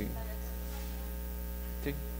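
Steady electrical mains hum in the sound system, with a short spoken word near the end.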